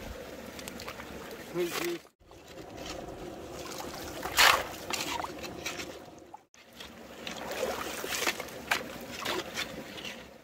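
Shallow stream running while a shovel digs stones and gravel from the streambed and tips them into a plastic tub, with scrapes and clatters, the loudest about four and a half seconds in.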